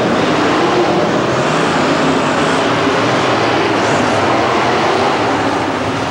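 Monster truck engines running loud and steady, a dense mechanical noise without pauses.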